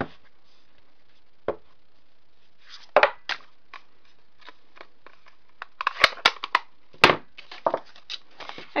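A rubber stamp on a clear acrylic block being tapped onto an ink pad and pressed onto a card box on a tabletop: a few separate knocks, then a quick run of sharper clicks and knocks near the end as the stamp, ink pad and box are handled.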